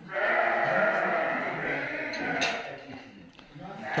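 Dorper sheep bleating: one long, wavering bleat lasting about two seconds, then quieter barn sound.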